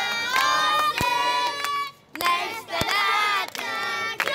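A group of children singing a birthday song loudly in chorus, clapping their hands along, with a brief pause about halfway through.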